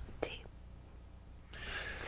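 A quiet pause in conversation: a brief soft 'sí', then low room tone, and a soft intake of breath near the end, just before a voice picks up again.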